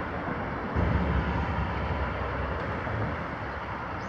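Steady outdoor rumble and hiss, with a low swell about a second in.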